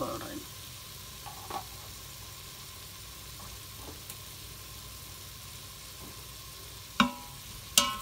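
Chopped onions, green peppers and garlic sizzling in hot oil in a steel pot, a steady hiss. Near the end come two sharp knocks as a wooden spoon strikes the pot.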